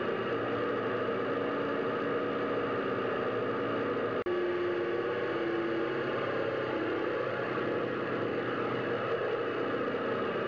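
Four radial piston engines of a B-17 bomber droning steadily in flight. The drone holds as many even tones at once, with a brief dropout about four seconds in, after which one tone stands out for a couple of seconds.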